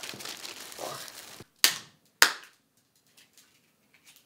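Plastic wrapping crinkling. Then two sharp, loud cracks about half a second apart as walnut shells are cracked open, followed by faint small clicks of shell pieces being picked apart.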